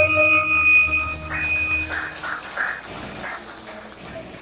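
Electronic organ music ending on a held chord that fades out over the first two seconds, followed by scattered noise from the audience as people clap.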